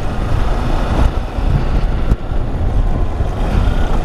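Riding noise on a Kawasaki Versys X300 motorcycle over a rough, broken road, heard from the rider's position. It is a steady, loud low rumble of wind on the microphone, engine and tyres.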